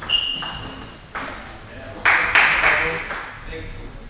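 A short ringing ping at the very start, then sudden bursts of voices that echo around a large sports hall.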